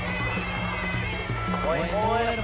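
Traditional Khmer boxing ring music: a reedy wind instrument holds high notes over a repeating two-pitch drum beat, with the pitch starting to bend near the end.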